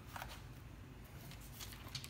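Faint rustling and a few light clicks of paper wipe packets and plastic film being handled on a wooden desk, over a low steady hum.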